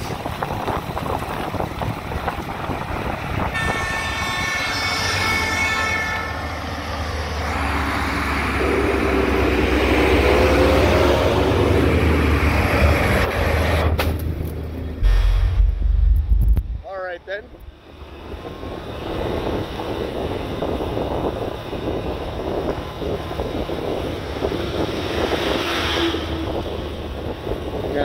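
Wind and road rush from a moving motorbike, with a horn sounding for about two seconds around four seconds in. A large diesel dump truck's engine then rumbles loudly as it passes close alongside, building up and cutting off sharply after about seventeen seconds.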